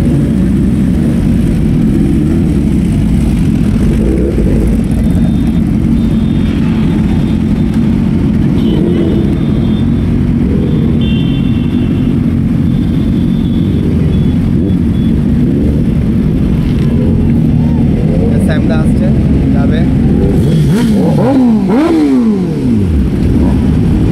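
Large sport motorcycle engines running with a steady, deep rumble. Near the end they are revved in several quick throttle blips, the pitch sweeping sharply up and down.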